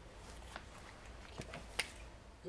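A few faint, sharp clicks of a small object being handled, the sharpest just before the end.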